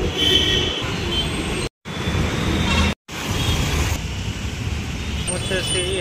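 Busy city road traffic running steadily, with a vehicle horn sounding briefly near the start. The sound cuts out twice for a moment.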